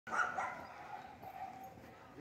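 A dog barking twice in quick succession near the start, then a fainter held note that fades away.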